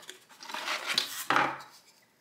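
Cardboard packaging rubbing and scraping as a plastic case fan is slid out of its box by hand, in irregular strokes with a louder scrape about a second and a half in.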